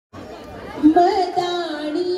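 A woman singing a Punjabi folk song through a microphone. She comes in about a second in on a long held note, with no drum, over faint room chatter.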